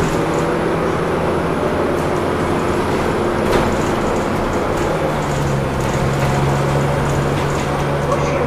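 Engine and road noise inside the lower deck of a moving DAF DB250LF / Plaxton President double-decker bus: a steady low engine drone that eases for a few seconds in the middle, then returns, with one sharp knock about three and a half seconds in.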